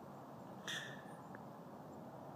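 A short, soft breath between sentences about two-thirds of a second in, over faint steady background hiss.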